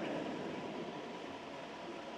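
A pause between words: steady background hiss and room noise, fading slightly.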